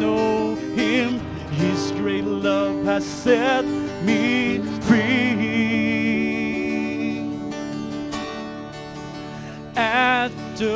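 Mixed church choir singing a slow worship song with acoustic guitar accompaniment. The voices hold one long note that slowly fades in the middle, and a new phrase starts near the end.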